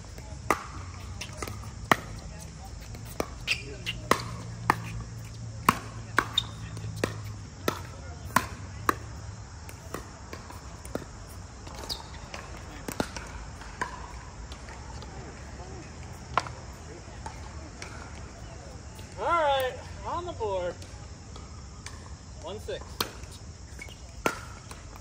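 Pickleball rally: sharp pops of paddles hitting a plastic pickleball and of the ball bouncing on the hard court. The pops come quickly for the first nine seconds or so, then only now and then. A voice calls out briefly near the end.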